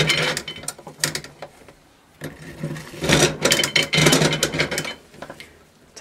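Cast iron hand-crank black walnut huller being cranked, its toothed mechanism rattling and clicking as it strips the green husks off the walnuts. Two spells of cranking, with a short pause about two seconds in, and it stops shortly before the end.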